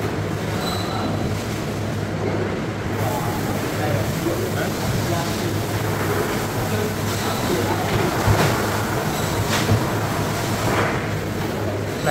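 Steady machinery hum and noise of a fish processing room, with a few sharp knocks in the second half.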